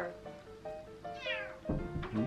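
A domestic cat meows once about a second in, a short call falling in pitch, over soft background music with held notes.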